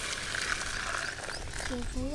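Hot dark syrup water poured in a thick stream from a metal pan into a metal bowl: a steady splashing pour that fades about three-quarters of the way through.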